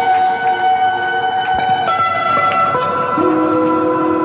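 Live indie rock band's electric guitar holding long, ringing notes that change pitch a few times, with no drum beat under them.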